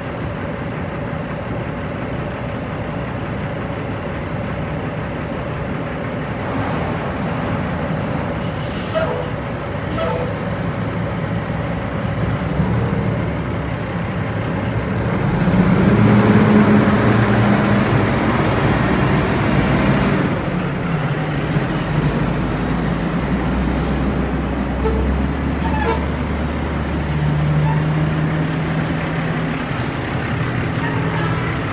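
Diesel engine of an International tri-axle dump truck running and pulling away. It grows louder about halfway through as it revs, with a high whistle that rises, holds for a few seconds and then falls away, before settling back to a low, steady drone.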